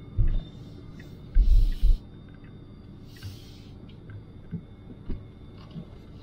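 Cabin of a Tesla Model Y rolling slowly through a parking lot: a quiet, steady hum with a few deep thumps in the first two seconds, a couple of soft hisses and light knocks.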